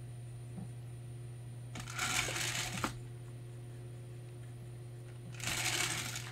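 Handling noise at a painting desk: two short scraping rustles, each about a second long, one about two seconds in and one near the end, the second as the painting is turned on its textured mat. A steady low electrical hum runs under them.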